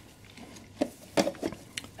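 A few light clicks and knocks as a brass clock movement is handled and turned over.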